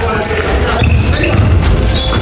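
A basketball being dribbled on a gym's hardwood floor during a game, with players' voices calling out over it.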